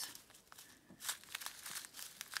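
Small zip-lock plastic bags of square resin diamond-painting drills crinkling as they are handled. The crinkling is faint at first and becomes busier about a second in.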